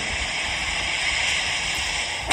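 A steady hiss.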